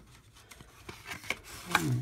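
Paper scratch-off lottery ticket being handled and slid out from under a clipboard clip: a few light rubbing sounds and small clicks, followed by a short spoken syllable near the end.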